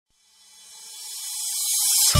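An electronic white-noise riser in a DJ remix intro, swelling steadily from silence over about two seconds. It is mostly a high hiss with faint tones underneath, building up to the entry of the beat.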